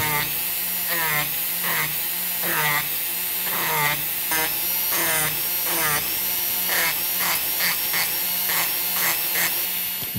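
Micromotor rotary carving handpiece, a dental-type tool, running at a slow speed with a small cylindrical abrasive bit, grinding the sharp edges off a wooden bird blank. A steady whine, its pitch dipping and recovering again and again as the bit bites into the wood.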